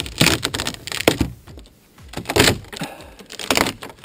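Rotten, delaminated lauan plywood hull side cracking and splintering as it is torn away by hand: a run of irregular sharp snaps and crackles.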